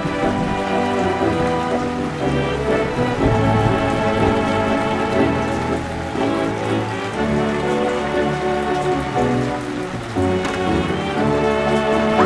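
Steady heavy rain falling as a hiss, over orchestral background music.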